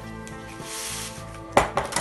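Steady background music over the rustle of the baking paper backing a puff pastry sheet as it is unrolled and laid out, with one sharp knock about one and a half seconds in, the loudest thing in the stretch, followed by a few light clicks.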